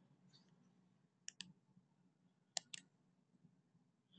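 Near silence broken by two quick double clicks of a computer's pointing device, the pairs about a second and a half apart.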